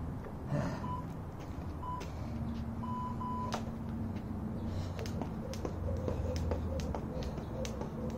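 A few short electronic beeps, the last one longer, then a jump rope's cable slapping the asphalt in a steady rhythm of about three strikes a second from around five seconds in.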